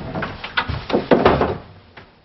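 Wooden wardrobe doors being pulled open: a run of knocks and rustles that stops about one and a half seconds in.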